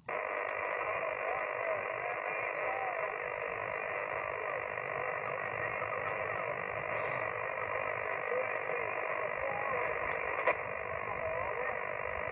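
Portable HF transceiver's speaker receiving single-sideband on 40 m: a steady, narrow-band hiss of band noise and interference, with a weak, distorted voice of the answering station buried in it. The hiss cuts in abruptly as the operator stops transmitting. He blames the heavy interference on a high-voltage power line just below.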